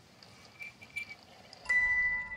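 Faint quiet with a couple of soft little blips, then about three quarters of the way in a single bright chime-like note is struck and rings on with clear overtones, the start of a music cue.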